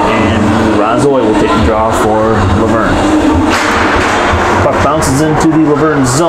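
Indistinct voices talking, with a few sharp clacks near the end.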